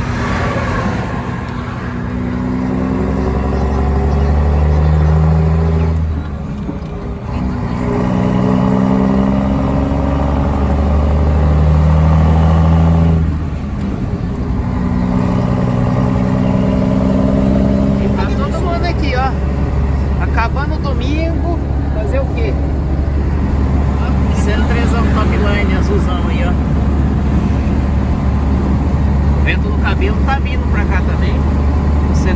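Scania L110 'Jacaré' truck's six-cylinder diesel engine heard from inside the cab, pulling up through the gears: its pitch climbs, dips at a gear change about six seconds in, climbs again, dips at a second change about halfway through, then settles into a steady cruise.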